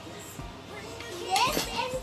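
A toddler's voice over background music: about halfway through she lets out a loud, high vocal sound that rises sharply in pitch, then carries on vocalising in a sing-song way.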